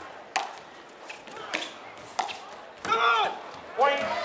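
Pickleball rally: paddles striking the plastic ball, a series of four or five sharp pops under a second apart.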